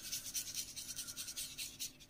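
Wet paintbrush scrubbing in small circles over watercolour card, blending Inktense pencil colour with water: a faint, quick run of soft strokes, several a second, stopping near the end.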